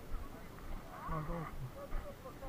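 A person's voice sounding briefly about a second in, over the open-air market's background noise and a low rumble.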